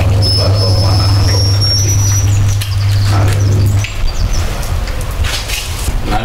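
A sound system's steady electrical hum through a live microphone, cutting off about four seconds in, with a thin high whistle in the first two seconds.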